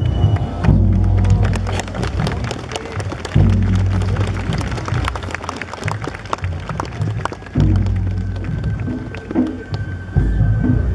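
Japanese festival float music (hayashi) accompanying a karakuri puppet show: many sharp drum strikes over long, deep swells that start suddenly, with a held high note near the end.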